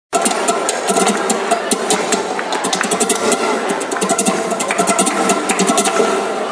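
Flamenco guitar playing the introduction to a caracoles with fast, dense strumming strokes, accompanied by hand clapping (palmas).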